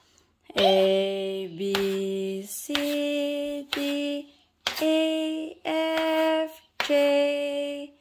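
A voice singing a slow tune of long held notes, about seven of them, each near a second long with short breaks between, the pitch stepping up partway through.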